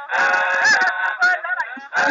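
Voices singing together in a dense blend, the pitch bending up and down, with brief breaks.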